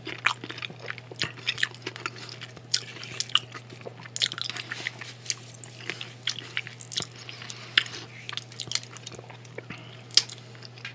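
Close-miked mouth sounds of a man chewing a mouthful of food: many short wet clicks and smacks throughout, over a steady low hum.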